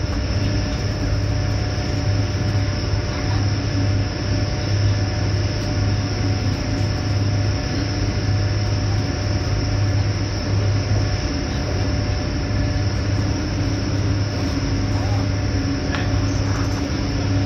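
Passenger train running at speed, heard from inside the carriage: a steady rumble of wheels and motion with a low drone that swells and fades every second or two.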